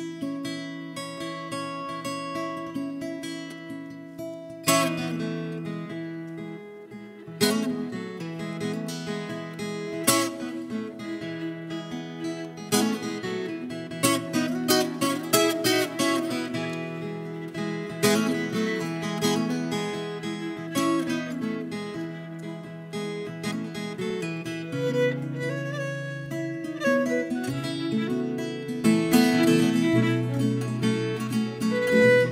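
Viola caipira (Brazilian ten-string folk guitar, paired steel strings) playing a slow solo instrumental introduction: ringing plucked notes, with chords struck every couple of seconds after the opening few seconds.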